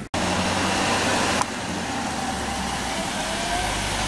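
SUV engine running, with steady engine hum and outdoor noise; the noise eases slightly about a second and a half in.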